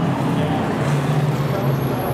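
Sportsman stock car engines running in a steady, low drone.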